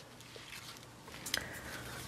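Quiet room with faint handling noises as a needle is threaded with waxed thread, and one small click about a second and a half in.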